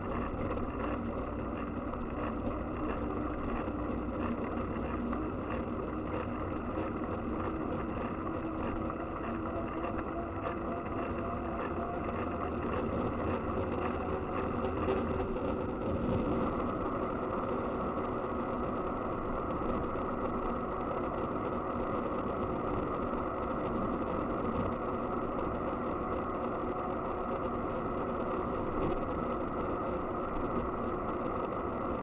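Steady rushing wind and tyre noise on the camera's microphone as a mountain bike rolls along an asphalt road.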